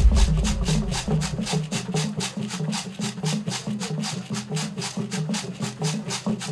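Traditional Igbo drums and percussion playing a fast, even rhythm, about five strokes a second, over low drum tones that alternate in a repeating pattern. A deep low rumble comes in under the first second or so.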